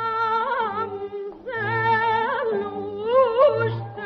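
A woman's voice singing ornamented, wavering melismatic phrases in maqam Huzam over steady low accompaniment, with a short break about a second and a half in. The sound is that of an early 1930s studio recording, with no high treble.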